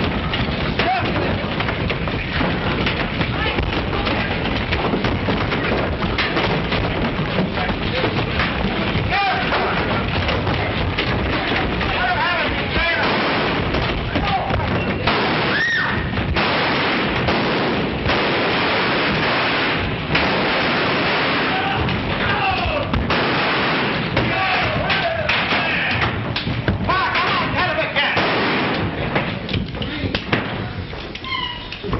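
Fistfight sound effects from an old film soundtrack: a dense, continuous din of scuffling and thuds, with men shouting and yelling throughout.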